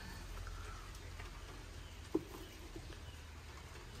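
Chicken eggs being picked from a straw nest box and set into a wicker basket: faint handling over a low rumble, with one short knock about halfway through.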